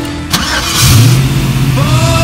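Car engine starting: a sharp click, then the engine catches and revs up about a second in before running on steadily.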